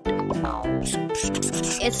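Cheerful background music, with a scratchy rubbing noise over it twice in the first second.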